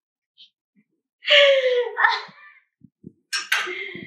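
A woman laughing: a loud, breathy burst about a second in that falls in pitch, then a second laughing breath near the end, with a couple of faint clicks in between.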